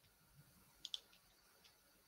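Near silence, broken by two quick, faint clicks close together a little under a second in.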